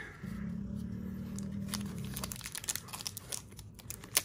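Foil wrapper of a trading-card pack crinkling and tearing as it is ripped open by hand, in sharp scattered crackles, mostly in the second half. A low, steady hum lasts for about the first two seconds.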